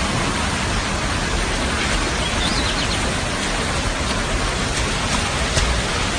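Fast-flowing floodwater rushing, a steady even wash of noise with no breaks.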